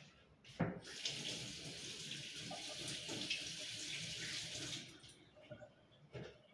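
Kitchen sink tap running steadily for about four seconds and then shut off, with a sharp knock just before the water starts.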